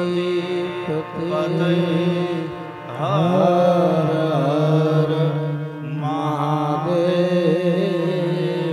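Devotional chanting: a man's voice sings a melodic, ornamented line over a steady low drone. The voice drops away briefly and comes back in with a rising glide about three seconds in.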